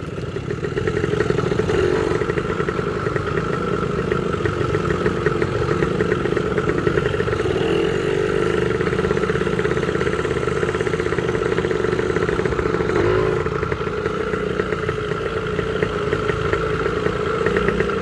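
Motorcycle engine running steadily at an even, moderate speed while riding along a trail, with no sharp revving.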